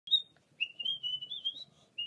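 A person whistling a short wavering tune: a brief opening note, then a longer phrase that wobbles up and down in pitch.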